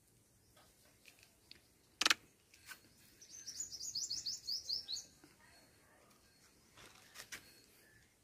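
A bird chirping: a quick run of about ten short, high, falling notes lasting about two seconds. A sharp click comes just before it, and a few fainter clicks come near the end.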